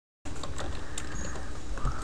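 Computer keyboard being typed on, a few faint key clicks over steady microphone hiss and hum, starting after a brief dead-silent dropout.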